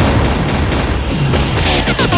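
Cartoon blaster shots and booms in quick succession over action music.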